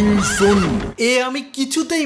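A horse whinnying, a wavering neigh that ends about a second in; a man then starts speaking.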